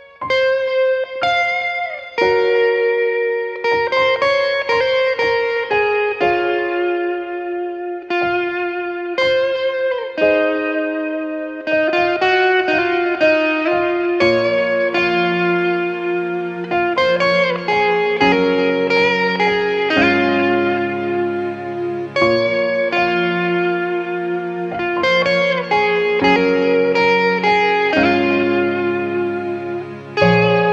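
Electric guitar (a Stratocaster-style solid-body) playing a melodic lead line of separate, ringing picked notes. About halfway through, lower sustained accompaniment notes join beneath the melody.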